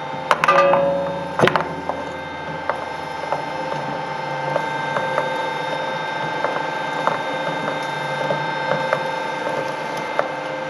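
Twin-shaft shredder running, its cutter shafts turning with a steady hum and whine. Near the start two loud metallic clangs ring out, then lighter knocks and ticks recur every half second or so as a steel oil filter rides on the rotating cutters without yet being gripped.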